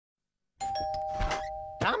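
Doorbell chiming two notes, a higher one then a lower one, which ring on together for about a second.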